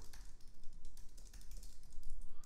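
Typing on a computer keyboard: a quick, irregular run of keystroke clicks while code is being edited.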